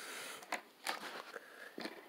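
Clear plastic packaging on a new skateboard's wheels and trucks crinkling and rustling as it is handled, with a few light clicks.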